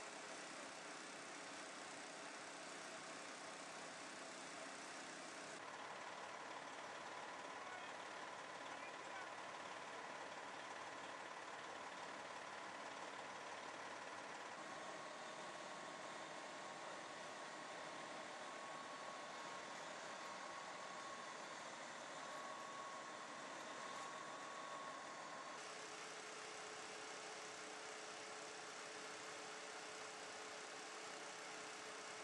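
Faint, steady running of a fire engine, with faint voices in the background. The background changes abruptly about five seconds in and again near the end.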